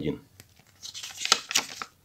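Paper rustling as a thin instruction booklet is opened and its pages are handled, a crinkling spell of about a second in the second half.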